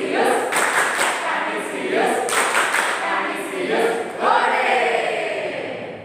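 A group of children's voices chanting a celebratory cheer together in unison, fading out near the end.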